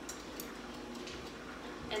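Faint, steady pouring of a thick starter of yogurt whisked with milk from a small bowl into the warm milk in a pressure cooker's inner pot, with a light tick about half a second in.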